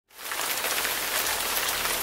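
Steady rain falling, a dense even hiss with scattered drop ticks that fades in quickly at the start.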